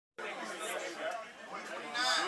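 Chatter of many people talking at once in a crowded locker room, starting a moment in.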